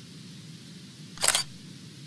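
End-card animation sound effect: one short noisy swish about a second in, over a low steady hum.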